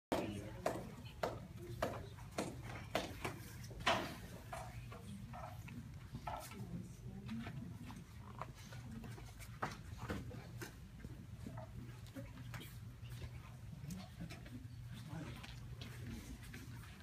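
Background voices in a room with a steady low hum, and a row of sharp knocks or slaps about every half second over the first four seconds, then scattered single knocks.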